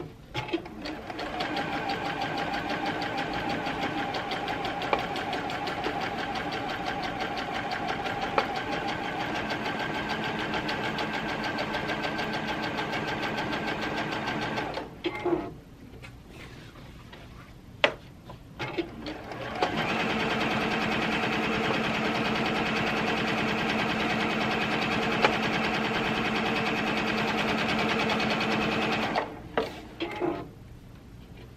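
Computerized sewing machine (DX7) running steadily as it top-stitches a pillowcase band. It runs for about fourteen seconds, stops for a few seconds with a few clicks, then runs again louder for about ten seconds and stops shortly before the end.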